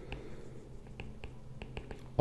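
Faint, irregular clicks of a stylus tapping and moving on a tablet screen during handwriting, about half a dozen short ticks over a low hum.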